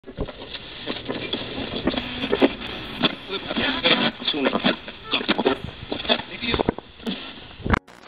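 Low-fidelity, muffled recording of people's voices mixed with many sharp clicks and knocks. It cuts off abruptly just before the end.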